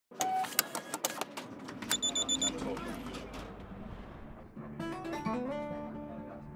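A string of clicks and knocks with a brief bell-like ding about two seconds in, then acoustic guitar begins playing about four and a half seconds in.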